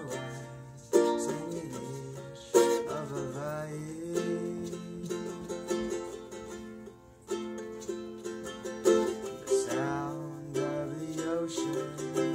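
Solo ukulele playing an instrumental passage of strummed chords, with sharp accented strums every few seconds.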